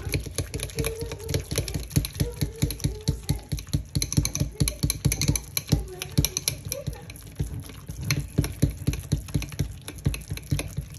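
Softened cream cheese and butter being stirred and mashed with a spoon in a metal mixing bowl for cream cheese icing: a quick, uneven run of wet, sticky clicks and squelches, several a second.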